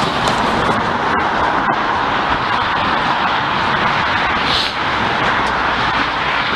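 Steady, loud noise of passing road traffic.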